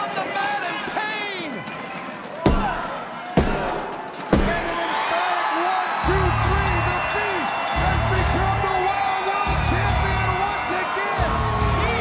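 A wrestling referee's hand slaps the ring mat three times, about a second apart, for the three count of a pinfall, over a shouting crowd. About six seconds in, loud music with a heavy pulsing beat starts over the cheering crowd.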